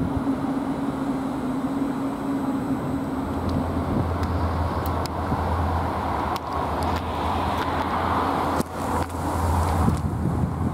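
CFR class 41 electric locomotive drawing a passenger train slowly over the station points, with a steady low hum from its motors and blowers. Several sharp clicks from about four seconds in, typical of wheels passing over rail joints and switches.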